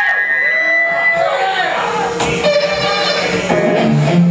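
A live rock band through a club PA: a voice, shouting or singing without clear words, over sustained guitar notes, with the band starting the next song near the end.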